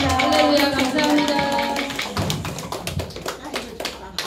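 Several voices sing a closing line over rhythmic hand clapping and drum strokes. The singing stops about two seconds in, and scattered clapping and taps carry on, growing fainter.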